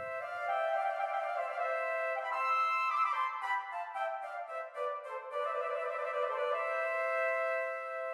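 Two flutes playing a melodic line in parallel thirds: the melody rises, breaks into a run of quick notes mid-way, then settles on a long held note near the end. The upper flute is transposed two scale degrees by a transposer locked to C major, so the third shifts between major and minor and stays in key.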